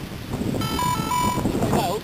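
A short electronic beeping tone that steps between a higher and a lower note twice, over faint voices and wind.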